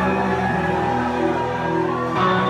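Live rock band's electric guitars and bass holding sustained, ringing chords.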